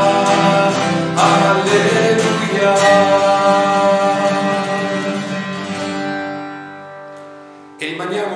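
A man singing while strumming an acoustic guitar. The song ends on a final chord that rings on and fades away over the last couple of seconds.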